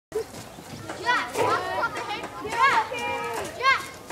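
Children shouting and shrieking at play, with several loud, high-pitched calls that rise and fall over other children's voices.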